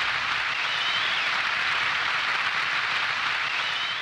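Steady hissing noise, like static or rain, as an electronic sound effect in a techno track's break, with the beat and bass dropped out. A faint wavering high tone sounds twice over the hiss.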